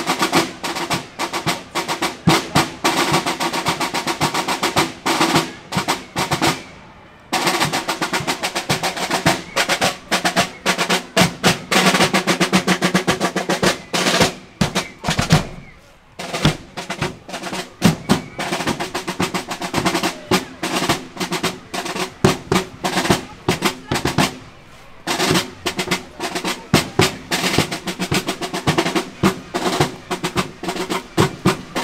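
Marching band snare drums playing a street cadence with rolls, broken by short pauses between phrases.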